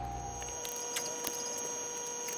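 A steady electrical hum with a thin high whine above it and a few faint clicks; a deeper low hum fades out in the first half-second.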